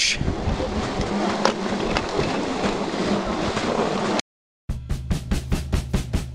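About four seconds of steady rumbling noise with faint scattered crunches, the sound of wind and movement on a helmet-mounted camera's microphone during a night hike up through snow. It cuts to silence, and then music with a fast drum beat starts.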